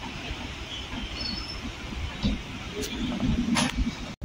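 Red LHB passenger coaches of a departing express rolling past on the station track: a steady rumble of wheels on rail, with a brief high squeal about a second in and sharp clatters near the end.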